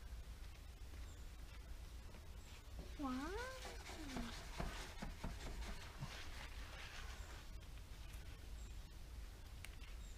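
Faint swishing of a plastic squeegee rubbed in short strokes over the application tape of vinyl lettering, from about four to seven and a half seconds in.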